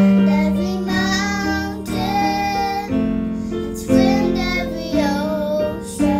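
Two children singing a slow ballad, accompanied by a Casio electronic keyboard playing sustained chords that change about once a second.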